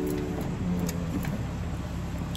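Low, steady rumble of a car's engine and road noise, heard from inside the cabin.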